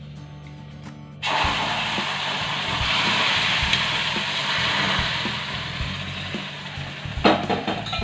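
Water poured into a hot pan of roasted semolina (rava), splashing and sizzling as it hits. It starts suddenly about a second in and eases toward the end. A couple of metallic knocks come near the end as the steel saucepan is set back down, over background music.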